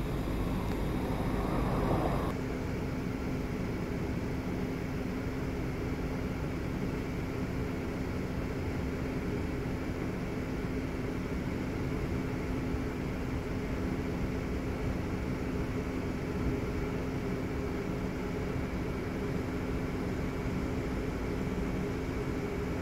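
Steady hum and low rumble of an idling car, heard from inside it, with a constant drone that does not change. A brighter rustling noise stops about two seconds in.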